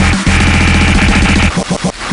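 Dubstep-style electronic music with a heavy bass line and a held high synth tone, which breaks into choppy stutters about three-quarters of the way through.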